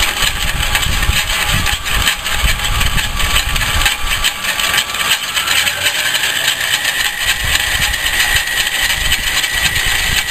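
Metal lathe running and turning a metal part, the cutting bit taking a cut: steady machine noise with a low rumble. A thin high whine joins about halfway through and holds.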